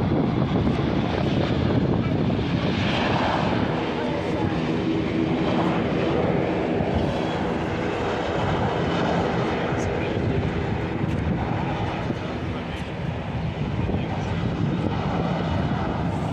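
Airbus A320 jet engines during the landing rollout on the runway: a steady, loud rush of engine noise that eases slightly about three quarters of the way through.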